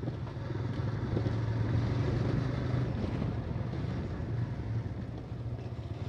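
Motorcycle engine running steadily at low road speed, with wind on the microphone and tyre noise over a rough, gravel-strewn dirt road.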